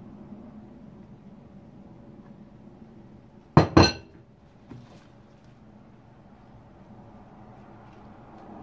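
Two sharp clinks of kitchenware knocking together in quick succession, about three and a half seconds in, with a short ring after each, then a faint knock a second later.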